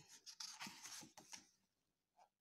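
Faint rustling and soft ticks of a picture book's page being turned by hand, ending about a second and a half in.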